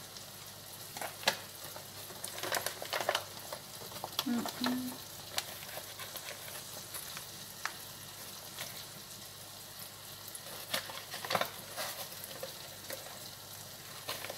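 Food frying in a pan with a steady sizzle, broken by scattered clicks and the crinkle of plastic seasoning packets being handled.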